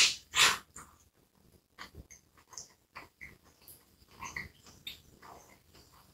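Close-miked bite into a soft hot dog bun, two loud tearing bites right at the start, followed by quiet wet chewing with small clicks and smacks of the mouth.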